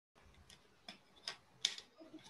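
Four faint, short clicks a little under half a second apart, each louder than the last.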